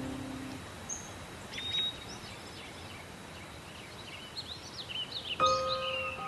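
Outdoor ambience: a steady low hiss with scattered short, high bird chirps. Background music fades out at the start, and a few held music notes come back in near the end.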